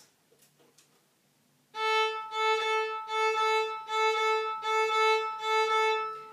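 Violin played with hooked bow-strokes in 6/8 time, starting a little under two seconds in: a long-short rhythm repeated on one pitch, each crotchet and quaver taken in the same bow with a small stop between them.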